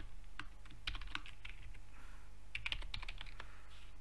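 Typing on a computer keyboard: scattered key clicks, in a quick run about a second in and another short run near three seconds, over a faint steady low hum.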